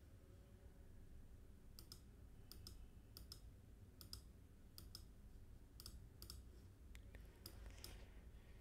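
Faint computer mouse clicks, a dozen or so short ticks, mostly in quick pairs, starting about two seconds in, over near silence.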